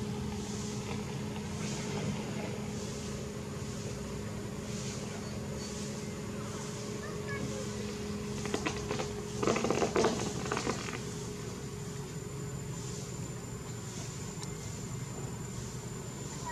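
A steady low mechanical hum with a high insect whine, broken by a short burst of crackling and rustling about nine to ten seconds in.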